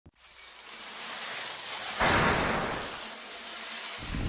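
Sparkly, glassy chimes ringing high, with a loud whooshing swell about two seconds in that dies away, and a last brief chime near the end.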